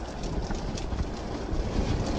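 Storm-force wind buffeting the microphone in a steady, rumbling rush, mixed with the noise of rough, breaking water.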